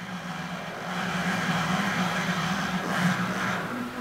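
Milling machine's axis drive jogging the Z axis back and forth to centre a Haimer taster on a ball: a steady low hum under a whirring rush. The whir grows about a second in and stops just before the end.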